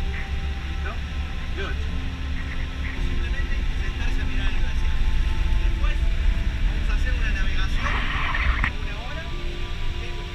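Steady low rumble of a coach bus's engine and tyres on the highway, heard from inside the passenger cabin.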